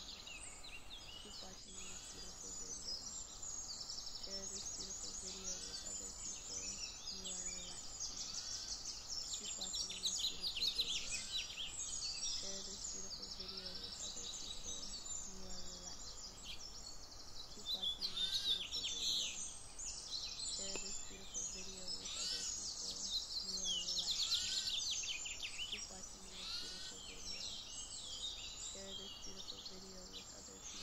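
A dense chorus of many songbirds chirping and trilling, swelling louder several times, with faint short low notes recurring underneath.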